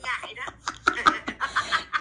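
Laughter on a video call: short snickers and chuckles broken up by a few words, a woman's laughter coming through the phone's speaker.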